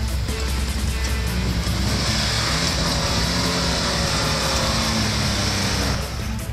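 A Jeep Wrangler's engine revving up and down as it drives through loose sand, with a hiss of sand and tyre noise, mixed under background music.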